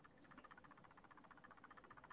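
Near silence: the gap between speakers on a video call.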